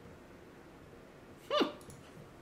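A man's short, thoughtful "hmm" that rises then falls in pitch, about a second and a half in, followed by a few faint clicks, against quiet room tone.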